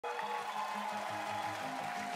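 Instrumental intro of a pop-rock song played by a band, before the vocals: a bass line moving in short steps under sustained higher notes.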